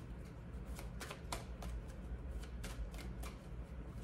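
A deck of tarot cards being shuffled by hand: a run of soft, irregular card clicks, about two or three a second.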